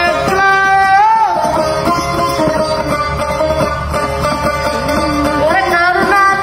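Pashto tappay folk music: a long-necked plucked lute playing a melody, with a voice singing a line whose pitch glides and bends.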